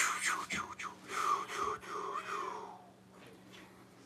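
A person's soft, breathy vocalizing, rising and falling in about four swells and fading out about three seconds in.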